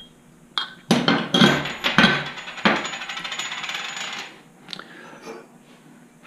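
Metal fork parts knocking and clinking against each other and the steel table as they are handled, with a stretch of rapid, fine rattling for about a second and a half in the middle, followed by a few faint clicks.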